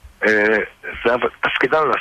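Only speech: a man talking in Hebrew on a radio talk programme.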